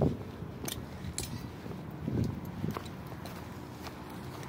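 Footsteps on grass and dirt with rustling handling noise from a hand-held phone: a few irregular soft thuds, about half a second to a second apart.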